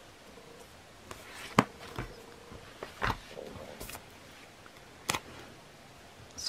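Hands working a paper sticker onto a coil-bound planner page: soft paper rustles and a handful of short light taps, the sharpest about one and a half seconds in and about five seconds in.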